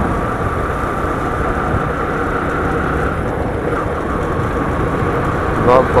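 Steady wind and road noise from a vehicle moving along a road: a rushing hiss with no clear engine note. A voice starts up near the end.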